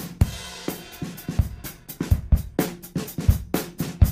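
A drum loop with kick, snare and hi-hats playing through Softube Console 1's SSL 4000 E channel compressor while its parallel control is turned up, blending compressed and uncompressed drums.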